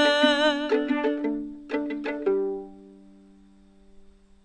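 A woman's voice holds the last sung note with vibrato over a violin plucked pizzicato, and the note ends under a second in. A few more plucked violin notes follow, the last one left ringing and dying away as the song ends.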